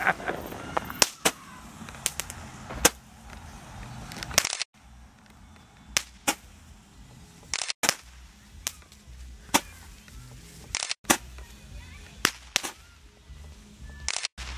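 A handheld firework firing a long, irregular series of sharp cracks and pops, roughly one every half second to a second.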